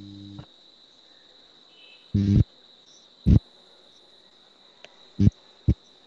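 A steady high-pitched trill, like an insect's, carried on an open video-call microphone. A low electrical hum cuts off just after the start. Four loud, short, dull thumps come at about two, three, five and five and a half seconds in.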